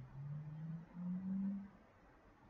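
A low hum in three separate notes, each a step higher than the one before and held about half a second, stopping shortly before the end.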